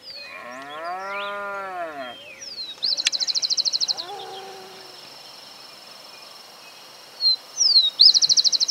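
A cow moos once in a single long call that rises and then falls in pitch. About three seconds in, a bird gives a fast, high trill lasting about a second, and another trill starts just before the end, with a few short thin whistled notes in between.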